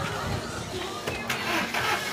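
A motor vehicle's engine running close by in a busy street, with a couple of short knocks and faint voices in the background.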